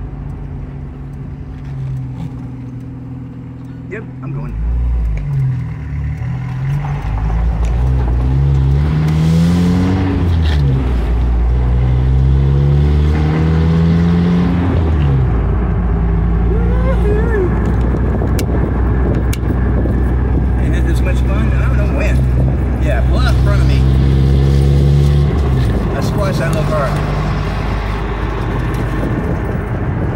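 Jeep engine idling, then pulling away under throttle: its pitch climbs, falls back at a gear change and climbs again. It then holds a steady cruise and eases off near the end.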